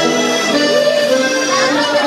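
Music led by an accordion, its held notes playing steadily.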